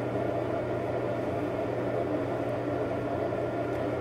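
Steady low hum and hiss of background room noise, unchanging, with no distinct events.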